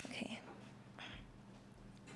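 Faint breathy sounds from a woman close to a microphone: a short soft vocal breath at the start and an exhaled breath about a second in, over quiet room tone.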